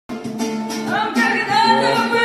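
A man singing to his own strummed acoustic guitar: the guitar chords start at once and the voice comes in about a second in.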